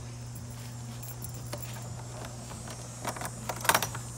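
Plastic compost barrel's hinged hatch and lid being handled: a few faint clicks, then a quick cluster of sharp clicks and rattles from the plastic and its metal hinges about three seconds in. A steady low hum and a high hiss run underneath.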